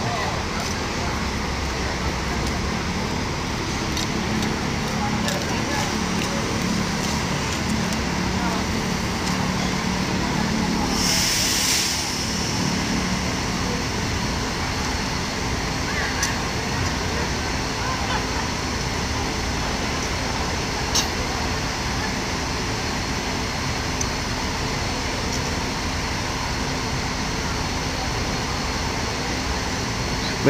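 Diesel engines of large coaches idling and moving off, a steady low hum under the general noise of the terminal. A brief loud hiss comes about eleven seconds in.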